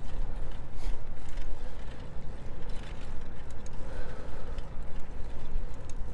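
Wind rumbling over a lavalier microphone's furry windscreen as a hybrid road bike is ridden along a paved path, a steady low buffeting mixed with tyre noise and a few faint mechanical clicks from the bike.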